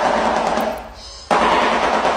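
Shoebill clattering its bill in a fast rattle that sounds like machine-gun fire. It comes in two bouts: the first fades out about a second in, and the next starts abruptly a moment later.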